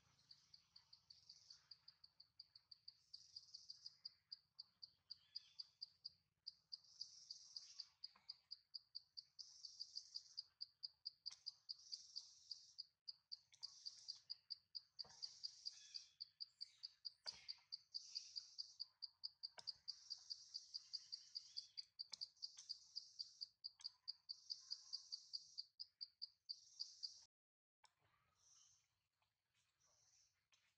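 Faint chorus of insects chirping, a high-pitched pulse repeating about three times a second with buzzy bursts above it, cutting off suddenly near the end, with a few faint clicks.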